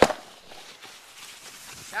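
Handling noise of the camera: one loud knock at the start, then steady rubbing and rustling as it is moved, with a voice starting at the very end.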